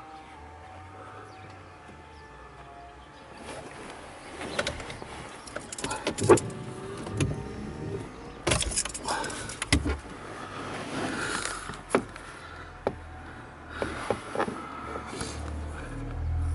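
Handling noise in a car: irregular clicks, knocks and rustles starting a few seconds in, over a faint low hum.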